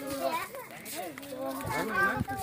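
Voices of people and children talking and calling.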